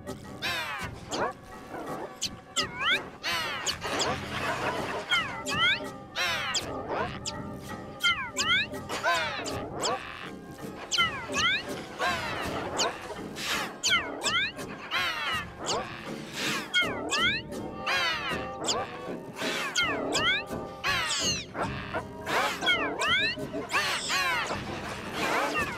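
A dense chorus of imitated bird calls for a flock of puppet birds: many quick chirps and whistles sliding down in pitch, several a second, mixed with squawks, overlapping without a break.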